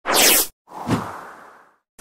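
Whoosh sound effects of an animated logo ident: a short, bright whoosh falling in pitch, then a second, fuller whoosh about a second in that fades away.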